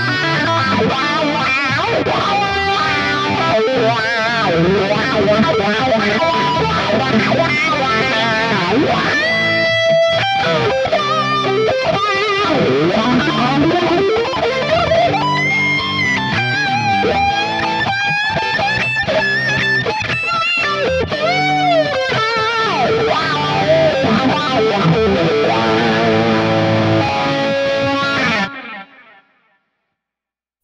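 Distorted electric guitar lead solo, played back from a DI track and reamped live through a Fractal Audio Axe-Fx III preset while a wah pedal sweeps the tone, with delay and reverb. The notes bend, glide and waver with vibrato, and the solo stops abruptly about a second and a half before the end.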